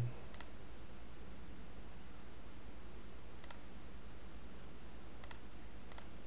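Computer mouse clicking four times, sparse and sharp, about three seconds apart at first, over a steady low electrical hum.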